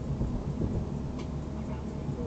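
Steady low rumble of road and engine noise from a car driving at about 42 mph, heard through a dash cam microphone inside the car.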